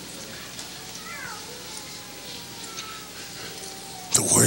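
Faint, distant voices crying out in a large reverberant hall, with one rising-and-falling cry about a second in and a long held note later.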